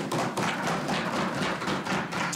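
Legislators thumping on their wooden desks in applause: a dense, steady patter of many rapid knocks.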